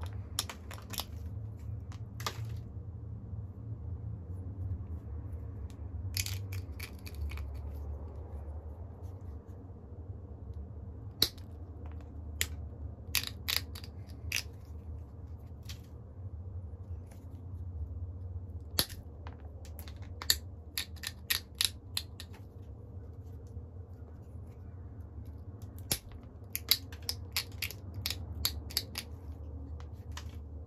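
Small antler pressure flaker pressing flakes off the edge of a Flint Ridge flint biface: sharp clicks and snaps of stone in scattered clusters, with gaps between them, over a steady low hum.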